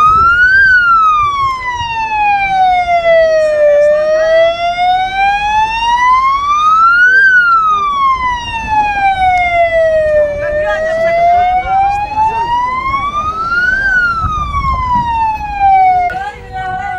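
Siren wailing: one loud tone that slides slowly up and down in pitch, about three seconds each way, reaching its high point three times.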